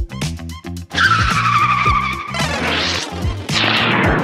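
Intro music with a steady beat, overlaid with car sound effects: tyres screeching from about a second in, then a rising whoosh and another loud rush near the end.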